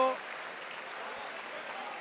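Spectators applauding in a steady patter of clapping, just after a wrestler has won a fall.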